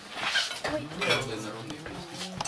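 Dishes and cutlery clinking at a dining table, with people talking indistinctly over it.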